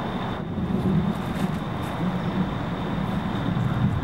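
Steady low rumble of outdoor background noise, like distant traffic, with a faint steady high tone above it.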